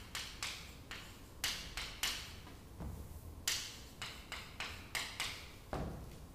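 Chalk writing on a blackboard: a dozen or so short strokes and taps, irregularly spaced.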